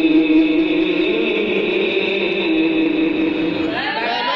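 A man's voice reciting the Quran in melodic tajweed style through a microphone, holding one long drawn-out note that slides slightly in pitch. Just before the end a new phrase begins with a quick, ornamented waver in pitch.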